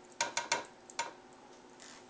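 Four light, uneven ticks in the first second as a measuring cup is tilted back and lifted away from a drinking glass just after pouring water into it.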